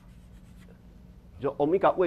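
Chalk writing on a blackboard, a few faint scratches and taps over a low steady hum, then a man's voice speaking loudly from about a second and a half in.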